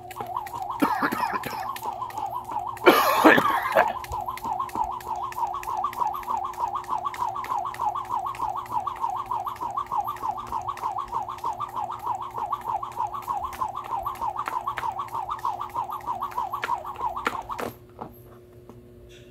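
A skipping rope whirring and ticking on the ground, jump after jump, in a steady quick rhythm that stops abruptly near the end. About three seconds in, a brief loud rough noise rises over it.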